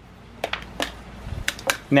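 Spring clamps of a battery load tester being unclipped from the battery terminals and handled: a handful of sharp clicks and clacks.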